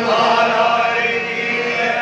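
Hindu devotional chanting by male voices with harmonium accompaniment, in long held notes.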